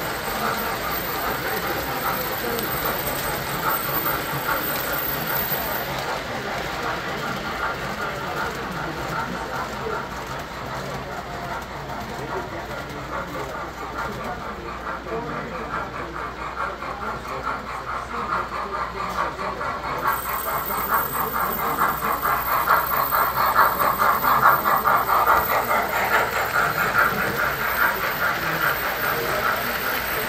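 Three-rail model train running on metal track: a steady rolling rumble and clatter of wheels and electric motor. It grows louder past the middle as the train comes close, with room chatter behind it.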